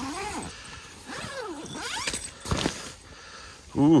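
A dog whining in a few high calls that slide down and back up, while the tent's zippered door is worked open, with a short sharp noise about two and a half seconds in.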